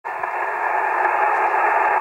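Steady shortwave static from a receiver tuned to 5450 kHz upper sideband: a thin hiss squeezed into the narrow voice band, with no bass or treble. It starts abruptly at the very beginning.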